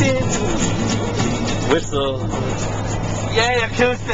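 Inside a moving car: a steady low road and engine drone under music, with two short bursts of voices, one about halfway through and one near the end.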